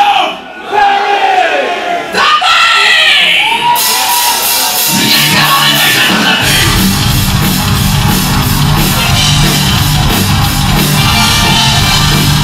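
A singer's drawn-out wordless yells into a microphone, then a live metal band starts a song: the cymbals come in first, and about six seconds in the drums, bass and distorted guitars kick in at full volume.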